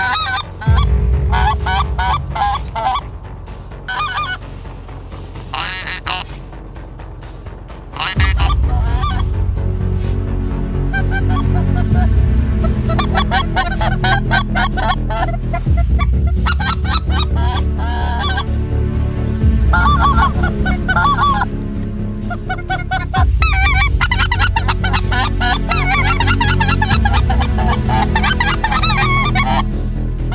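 Hunters blowing goose calls, a run of goose honks. The honks come in scattered bursts for the first several seconds and turn into a near-continuous series from about eight seconds in.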